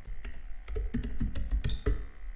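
Typing on a computer keyboard: a quick, irregular run of key clicks as an email address is typed in.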